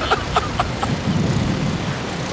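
Wind rushing over the onboard microphone of a slingshot ride capsule in flight: a steady low rumble, with short bursts of laughter in the first second.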